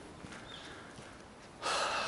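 A man draws a long, audible breath in, smelling the air, starting about one and a half seconds in; before it there is only a faint even background hiss.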